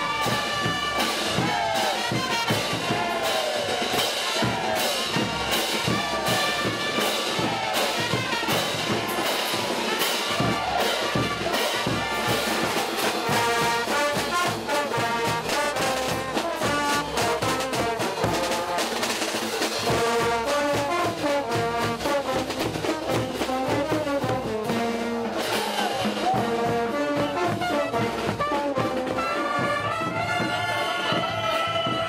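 Bolivian brass band playing a cullaguada march: trumpets and trombones carry the melody over a steady beat of bass drum, snare drum and cymbals.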